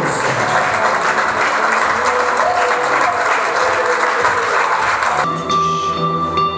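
Applause and crowd noise over background music, cutting off suddenly near the end to leave the music alone.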